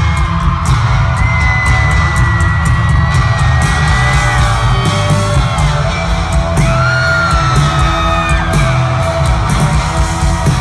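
Live rock band playing loud, with drums and electric guitar, recorded close through a phone's microphone. Long high yells are held over the music twice.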